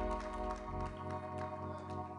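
Electronic keyboard holding soft, sustained organ-style chords, the low notes changing partway through.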